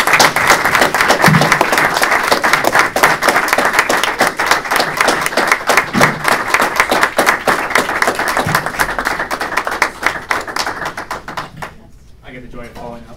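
A roomful of people applauding. The clapping is loud and dense at first, then thins out and dies away near the end.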